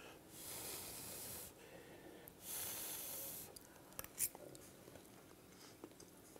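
Faint breathing through the nose while chewing a mouthful of food: two soft exhales of about a second each, then a few small mouth clicks.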